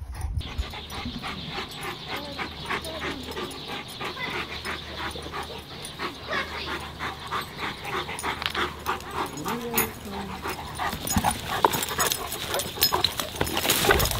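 Two Cane Corsos playing quietly, with quick panting breaths and no barking or growling.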